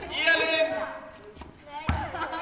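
A voice calls out a drawn-out "Åh". Near the end comes a single sharp thud of a basketball bouncing on the gym floor.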